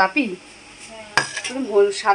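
A single sharp metallic clink of a stainless steel bowl about a second in, with a person talking around it.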